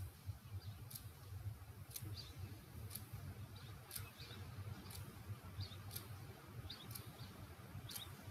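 Quiet room tone with a low hum, and a faint, sharp click about once a second.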